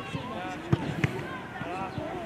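A football being kicked on an artificial-turf pitch: two sharp thuds about a third of a second apart, near the middle, under faint shouting from players and onlookers.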